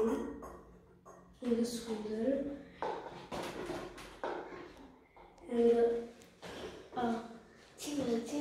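Short wordless voice sounds of effort, a few held hums and 'uh's, while a lever-arm citrus press is pulled down on a lemon half, with faint clicks and squeezing noise from the press between them.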